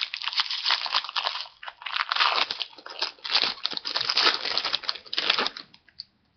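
Foil wrapper of a 2015 Topps Series 1 jumbo pack of baseball cards being torn open and crinkled in the hands, an irregular crackling that stops just before the end.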